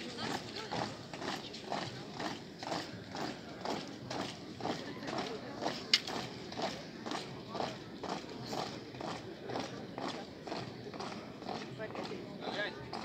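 A column of soldiers marching in step on a wet asphalt road, their boots striking together in a steady, even rhythm. One sharp click stands out about halfway through.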